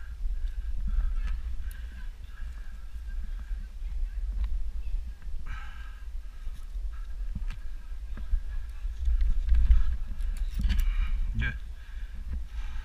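Steady low rumble of wind and movement on a body-worn action camera's microphone. Scattered light clicks and knocks come from hands grabbing and pulling the rope climbing net of a high ropes course.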